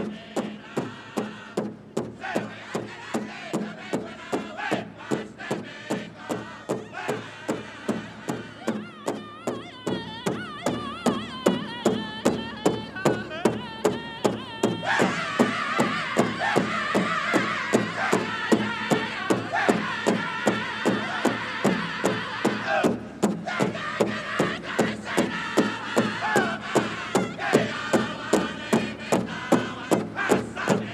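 A powwow drum group singing over a steady, even beat on a large shared drum, with women's high voices joining in. A high sung line slides downward, the full group comes in louder about halfway through, drops away for a moment, then carries on over the unbroken drumbeat.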